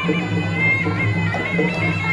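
Traditional Khmer boxing music: a sralai (Khmer oboe) playing a high, wavering melody over a steady drum beat.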